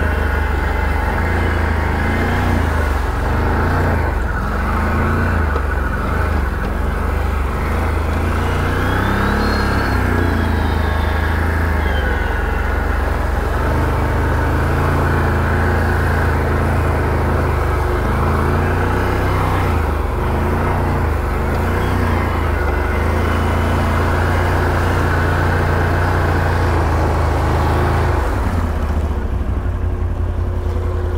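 Can-Am Renegade 1000 XMR ATV's V-twin engine running at low speed under load on a muddy trail, its revs rising and falling several times as it pushes through mud and water puddles.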